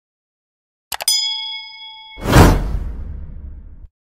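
Sound effects for a subscribe-button animation. A quick double mouse click about a second in sets off a bell chime that rings for about a second. It is followed by a loud whoosh that peaks about halfway through and fades away.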